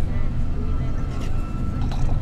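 Show soundtrack of a deep, steady rumble with a thin high tone held through most of it.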